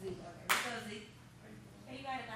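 A single sharp hand clap about half a second in, among quiet talk.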